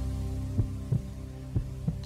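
Game-show suspense music: a low held drone under a heartbeat-like double thump that repeats about once a second, the tension cue played while a contestant is thinking.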